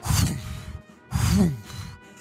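Two breathy whooshing bursts about a second apart, standing for large birds' wingbeats at takeoff, over quiet background music.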